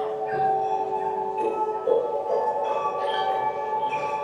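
Generative electronic music: chiming struck notes over several held tones. The notes are produced from geometric shapes translated into MIDI.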